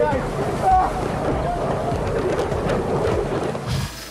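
Rushing water and wind buffeting the microphone of a camera aboard a boat being swamped, with people's voices crying out over it; it cuts off abruptly near the end.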